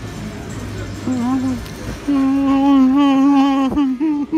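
A man humming 'mmm' with a full mouth while eating, a sound of enjoyment: a short hum about a second in, then a loud, long, steady one lasting about a second and a half, ending in a sharp click.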